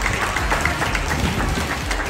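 A crowd of students applauding, a dense patter of many hands clapping.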